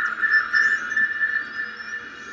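Ambient electronic music: a held synthesizer tone with faint sweeping glides high above it.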